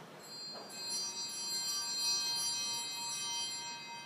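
Altar bells (sanctus bells) rung at the elevation of the chalice during the consecration: a cluster of small bells ringing together, starting just after the start and fading away near the end.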